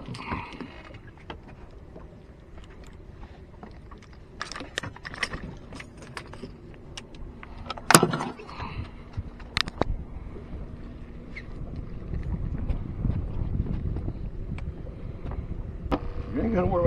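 Scattered clicks and knocks as a redfish held in a plastic fish gripper is handled over a cooler-lid measuring board on a boat deck, the loudest a sharp knock about eight seconds in, over a steady low rumble that grows louder near the end.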